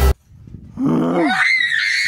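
A boy's voice yelling, starting low and rising into a high, wavering scream.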